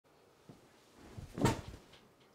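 A person sitting down in an office chair: a faint click, then a short cluster of knocks and creaks from the chair, loudest about halfway through.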